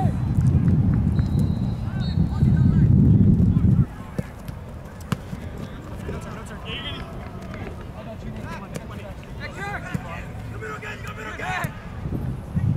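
Outdoor soccer game sound: scattered distant shouts from players and spectators across a grass field. A low rumble on the microphone fills the first four seconds and cuts off suddenly. A single sharp knock comes about five seconds in.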